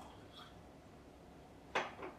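Small porcelain teacup set down on its saucer, one sharp clink near the end, with a faint click about half a second in.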